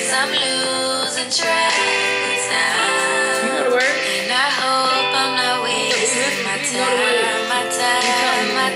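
A recorded song with sung vocals over a backing track plays steadily: the artist's own first studio-recorded song being played back.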